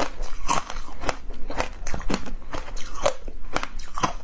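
Close-miked chewing of a mouthful of frozen yellow ice cream, crisp crunches coming about twice a second.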